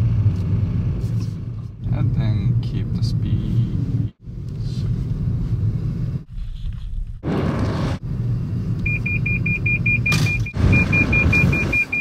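Steady road and tyre rumble inside a 2016 Toyota Prius's cabin as it drives. About three-quarters of the way in, a rapid high-pitched beeping starts, about six beeps a second: the Toyota Safety Sense pre-collision system warning of the vehicle ahead.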